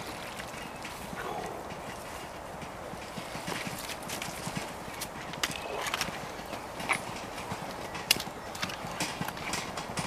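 Magnet-fishing rope hauled in by hand and a metal catch dragged up through the reeds at the water's edge: a steady hiss with irregular sharp clicks and knocks that come more often from about three seconds in.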